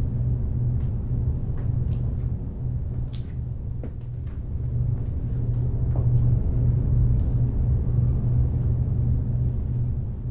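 A steady low rumbling drone that swells a little past halfway, with a few faint ticks and taps over it.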